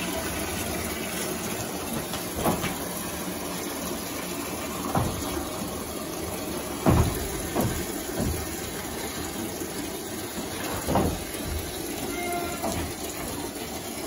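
Water running steadily from a hose into a plastic bucket, with a few short knocks scattered through it as goats push at the bucket to drink.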